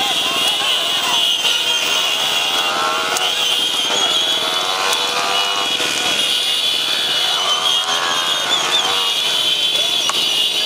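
Many motorcycle engines running at speed in a close pack, with voices shouting over them.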